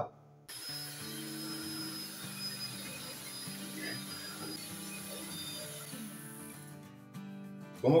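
Electric hand mixer running steadily as it beats egg yolks and sugar into a pale cream, starting about half a second in and stopping about a second before the end. Quiet background music plays underneath.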